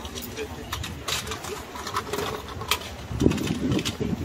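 Outdoor ambience of a pedestrian square: passers-by talking, with scattered short clicks in the first few seconds and a heavier low rumble near the end.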